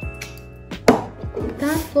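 A single sharp click about a second in, made as small plastic cosmetics are handled.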